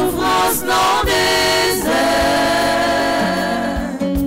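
A small group of women's voices singing a hymn together. The notes move in the first half, then they hold a long note from about two seconds in.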